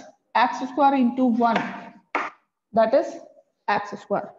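Chalk knocking and scraping on a blackboard while writing, with a woman's voice talking over it.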